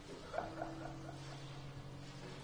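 Quiet free-jazz improvisation on trombone, electric guitar, drums and piano: a low held tone under a run of short, high blips, about five a second, starting about half a second in.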